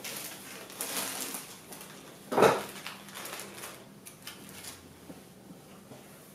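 Clear plastic film rustling and crinkling as it is spread over balls of beignet dough on a baking tray to let them rest, with one louder rustle about two and a half seconds in, fading toward the end.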